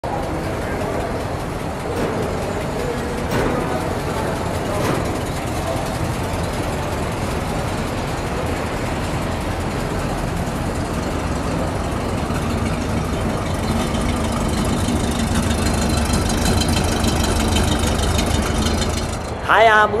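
1970 Plymouth Superbird's 440 cubic-inch V8 running at low speed as the car is driven slowly, with a steady low rumble that grows louder over the last several seconds.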